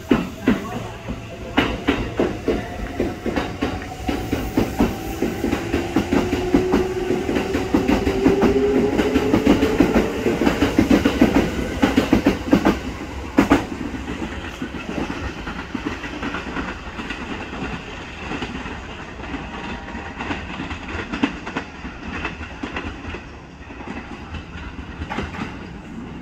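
Kintetsu Ise-Shima Liner express train pulling out of the station: its traction motors whine steadily higher in pitch as it gathers speed, and its wheels clack over the rail joints. After about 12 seconds it fades to a quieter rumble and clatter as the Urban Liner Next express runs in.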